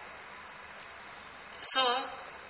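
A pause in a man's talk filled with faint steady background hiss and a thin high tone. He starts speaking again with a short word near the end.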